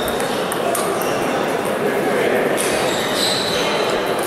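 Scattered clicks of table tennis balls striking tables and bats from games across a large, echoing sports hall, over a steady murmur of players' voices.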